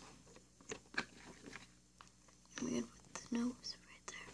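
Light clicks and taps of small items being handled in a plastic storage box, then two short murmured voice sounds near the end.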